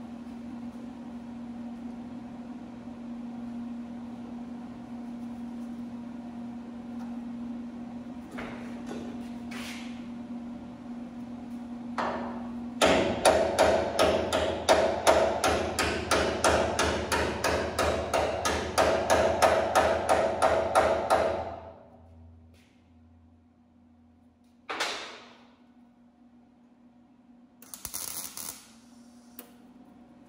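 A fast run of hard metal-on-metal strokes on a steel truck frame, about three to four a second, lasting some eight seconds. Near the end a wire-feed (MIG) welder arcs briefly for a tack weld, with crackling sparks.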